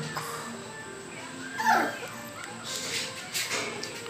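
A one-month-old American Bully puppy giving a short, falling whimper a little under two seconds in, over quiet background music.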